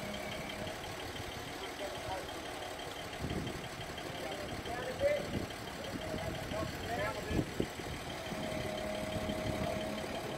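A mobile crane truck's diesel engine idling steadily, with a few brief voices.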